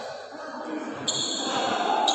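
Badminton hall between points: a murmur of background voices, with a high, steady ringing tone that starts sharply about a second in and another right at the end.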